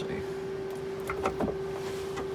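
A steady electrical hum with a few light clicks and rustles from packaged tools being handled on a pegboard hook.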